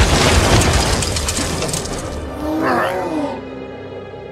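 Film sound effects over background music: the noisy tail of a crash fades over the first two seconds, then a short wavering, bending-pitched cry, robotic or creature-like, comes about three seconds in, with held music tones beneath.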